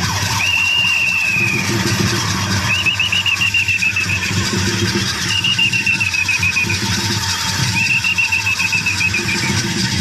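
Shrill whistle-like calls, each about a second long and falling slightly in pitch, repeat every two seconds or so, some with a fast warble. Underneath runs a steady, quick low beat.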